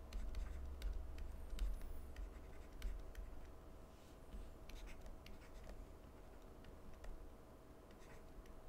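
Stylus tapping and scratching on a tablet surface while handwriting, faint and irregular, busier in the first few seconds. A faint steady hum lies underneath.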